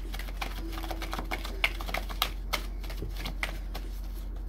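A deck of tarot cards being shuffled by hand: a quick, irregular run of card clicks and slaps, a few louder than the rest in the middle, over a steady low hum.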